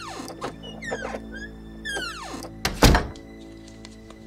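A wooden door squealing on its hinges in a few falling squeaks as it swings, then shutting with a loud thunk a little under three seconds in, over soft background music.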